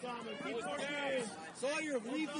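Several people's voices talking at once, the words unclear, with no other distinct sound standing out.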